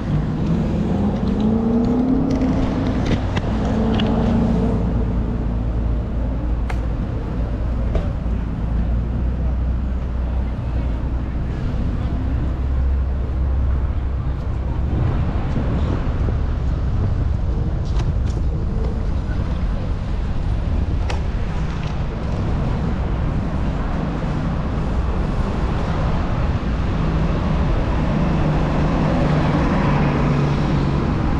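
City street traffic noise with a heavy, steady low rumble of wind on a moving microphone.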